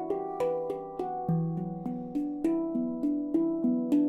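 Handpan tuned to an E Low Sirena scale, played with the fingers: a flowing run of struck notes, about three a second, each ringing on under the next. A deeper note, the central ding, sounds about a second in.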